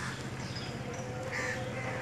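Several short bird calls, a few higher chirps among them, over a steady low hum.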